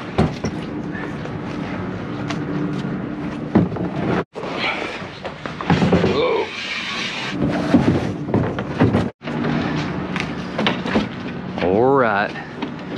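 Handling noise of kayaks and gear being carried and loaded into a truck camper: scattered knocks and scrapes over a steady low hum, in three short takes.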